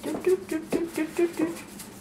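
A person laughing in a quick run of short, evenly spaced 'ha' sounds, with faint light ticking from a salt shaker being shaken over the bowl.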